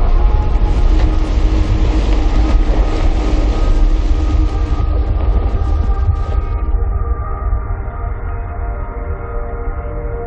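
Deep, loud rumble of glacier ice calving and falling into the sea, over the held tones of a music score. About six and a half seconds in, the hiss of the collapse cuts off, leaving a lower rumble and the sustained music.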